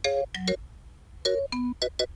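Sampled marimba from a mallet sample pack playing a brisk melody of short, quickly fading struck notes mixed with three-note chords, over a faint low hum.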